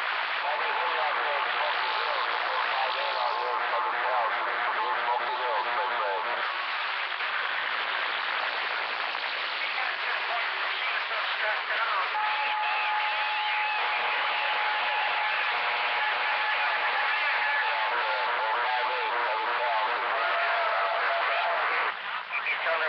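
CB base-station radio receiving several distant stations talking over one another in heavy static, with steady heterodyne whistles; the longest runs from about the middle for roughly eight seconds. The jumble is the sign of a crowded band in rough receiving conditions.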